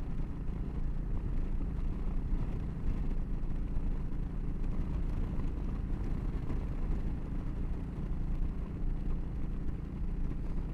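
Yamaha V Star 1300's V-twin engine running steadily at highway cruising speed, about 70 mph, with a constant rush of wind and road noise.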